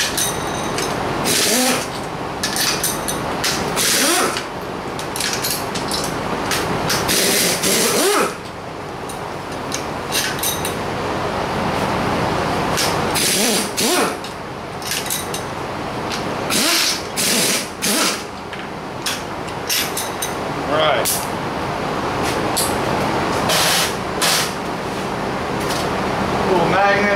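A ratchet wrench run in short, repeated spurts of under a second each, undoing the crankcase nuts on a Volkswagen 1600 engine case, over steady background noise.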